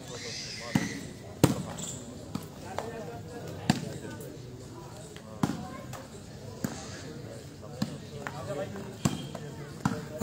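A volleyball is struck by hand again and again during a rally: about a dozen sharp slaps, irregularly spaced roughly a second apart, over a low crowd murmur.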